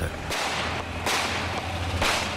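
Rushing whoosh sound effects: a swell of noise at the start, a stronger one about a second in and the strongest near the end, over a steady low drone.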